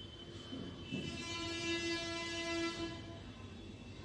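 A steady horn-like tone with many overtones, holding one pitch for about two seconds from about a second in, with a brief low knock as it begins.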